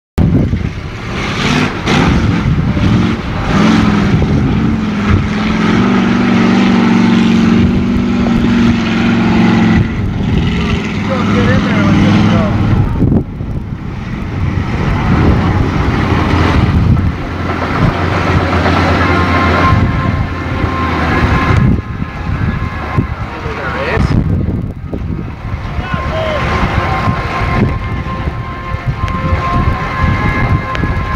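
Lifted mud trucks' engines running hard. One is held at high revs with a steady note for several seconds and drops off sharply before the middle. Later a lower, steady engine note follows.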